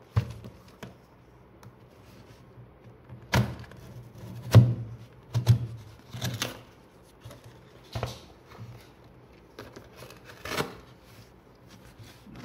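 Cardboard toy box being handled and opened by hand: a series of separate knocks and scrapes, about seven in all, the loudest about four and a half seconds in, with quieter rustling between them.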